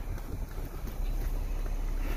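Wind buffeting the microphone outdoors, a low, steady rumble that gets louder about a second in.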